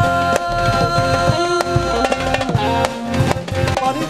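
Live band music: harmonium and electric keyboard holding long notes over a steady drum beat.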